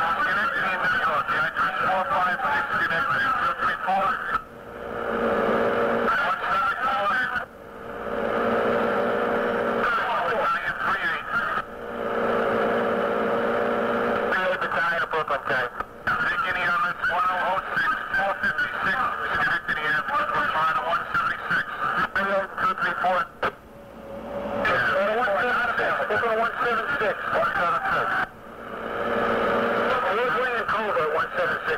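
Fire department two-way radio traffic: garbled, tinny voice transmissions with no clear words, broken by short gaps every few seconds as one transmission ends and the next keys up. Some transmissions carry a steady hum.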